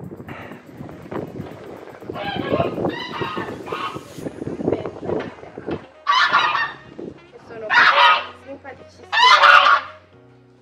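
White domestic geese honking: three loud, harsh honks in the last four seconds, over quieter calling earlier on.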